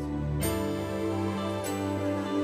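Slow, soft worship music: held keyboard chords with electric guitar, the chord changing about half a second in and again near the end.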